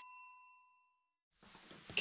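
Tail of a bright electronic notification chime, its several ringing tones fading out over about the first second, followed by faint room noise.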